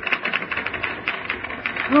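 Several manual typewriters clattering in a rapid, continuous run of key strikes, the busy sound of an office typing pool.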